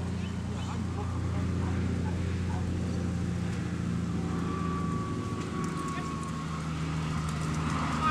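An engine running at a steady low hum with an even pitch. A faint, thin, steady tone sounds for about two seconds a little past the middle.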